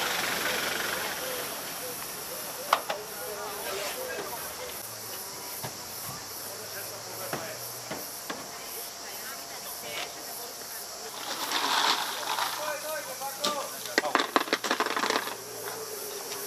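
Outdoor roadside ambience: a steady hiss with people talking in the background, a low steady hum coming in about five seconds in, and a few scattered clicks and knocks.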